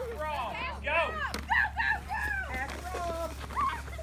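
Children's high-pitched voices calling out and chattering, with a steady low hum underneath.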